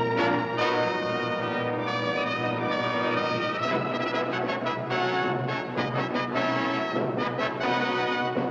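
Brass-led orchestral music playing at a steady level.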